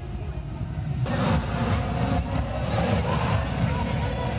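Low rumble of wind on the microphone, with indistinct chatter of many voices that gets louder about a second in.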